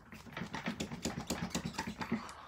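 Hands being shaken rapidly in the air: a fast patter of flapping and sleeve rustling, many short strokes a second.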